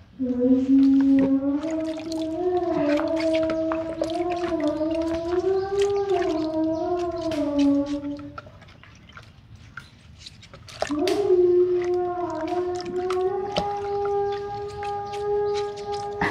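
Taro corms being washed by hand in a bucket of water, with scattered small splashes and knocks. Over it runs a long, slowly wavering hum for about eight seconds, then, after a short pause, a second, steadier hum.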